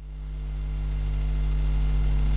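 A low, steady hum with a few held tones beneath it, fading in from silence and growing gradually louder.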